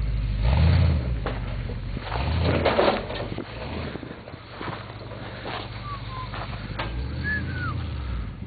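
Off-road rock crawler's engine running at low speed and revving in two short surges, about a second in and again around two and a half seconds, as it works up a rock ledge. Scattered sharp knocks are heard among the engine sound.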